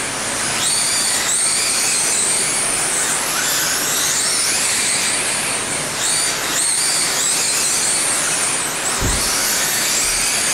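Several 1/10-scale electric RC sprint cars racing on a dirt oval. Their electric motors make a high whine that rises and falls in pitch, several cars overlapping, over steady tyre and track noise. There is a short low thump near the end.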